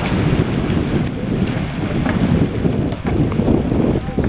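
Wind buffeting the microphone: a loud, gusty rumble.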